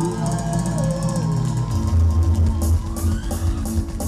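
A disco polo band playing live through a PA, heard from the crowd. A melodic line glides down in the first second or so, then a heavy bass and drum beat comes in a little before halfway.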